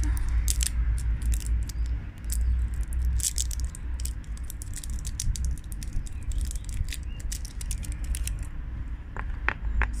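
Small plastic cosmetic pigment jar being handled and opened: clusters of sharp clicks and light scraping from its screw cap and plastic parts, over a steady low rumble of wind on the microphone.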